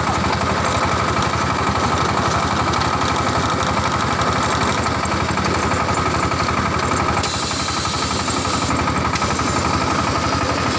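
Small clay wire-cut brick machine running steadily, its drive and extruder making a continuous mechanical drone with a fast, even pulsing.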